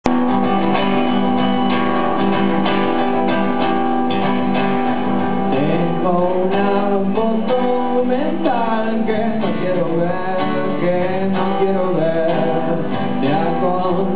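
Acoustic guitar strummed steadily through a song's instrumental intro in a live set. A second, wavering melodic line joins about six seconds in.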